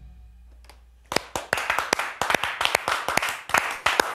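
The band's final note fading out, then a small group of people clapping from about a second in, in quick irregular claps.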